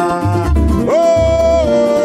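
Live pagode samba: a male voice holds a sung vowel that slides up about a second in, over a nylon-string acoustic guitar, a pandeiro and a steady low bass pulse.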